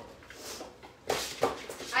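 Rummaging in a kitchen drawer, with two short knocks about a second in.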